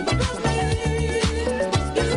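Funk-disco dance track playing in a DJ mix, with a steady beat and a strong bass line.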